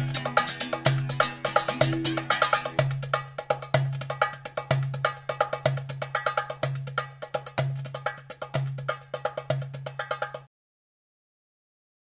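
Background music with a busy percussion pattern over a bass note about once a second, fading down and then cutting off shortly before the end.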